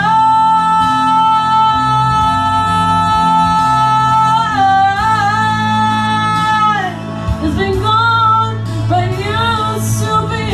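A woman singing a ballad into a microphone, belting one long high note for about four and a half seconds, wavering briefly, holding it again until about seven seconds in, then moving through shorter sliding phrases, over a steady instrumental backing.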